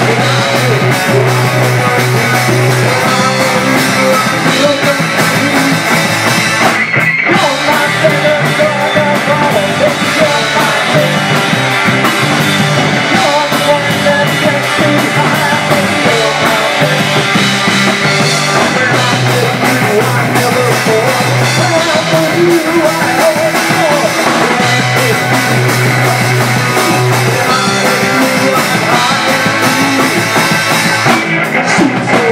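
Live punk rock band playing: distorted electric guitar, bass guitar and drum kit, with sung vocals over them.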